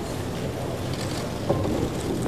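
Steady noisy ambience of a crowded hall, an even hiss with no clear voices, and a faint click about one and a half seconds in.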